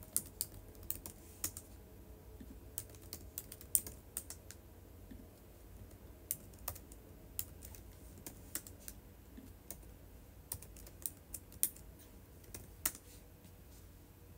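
Irregular, light, quick clicks of typing, in uneven runs with a short pause partway through.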